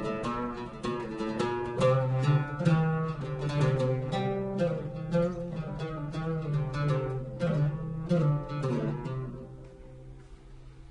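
Solo oud playing a taqsim, an improvised passage in maqam Rast: a quick run of single plucked notes that thins out and fades near the end. The third and seventh steps of Rast sit a quarter tone lower than in the Western major scale.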